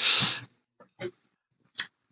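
A man laughing: a loud breathy burst at the start, then two short sharp breaths about a second and nearly two seconds in.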